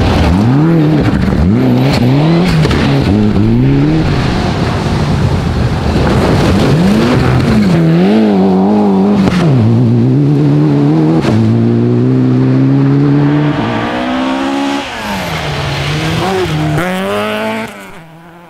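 Mitsubishi Lancer Evo 9 rally car's turbocharged four-cylinder engine at full throttle on a gravel stage. The pitch climbs and drops again and again with quick gear changes, then makes one longer climb about eleven seconds in before falling away near the end.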